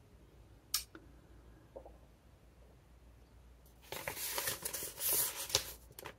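A single short click under a second in, then from about four seconds in a couple of seconds of paper rustling and crinkling as a sheet of paper is handled.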